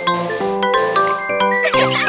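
Bright, bouncy children's game music with chiming ding sound effects over it.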